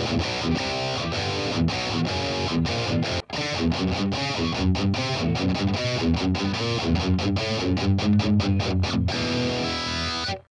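Distorted, high-gain electric guitar through a BOSS Katana-100 MkII modelling a dual rectifier in vintage mode, pushed by an overdrive booster and a graphic EQ. It plays a rhythmic, stop-start riff of tightly cut chords, with a brief pause about three seconds in.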